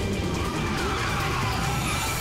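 Sport motorcycle engine running hard as the bike rides up and passes close, its note rising and then falling, over background music.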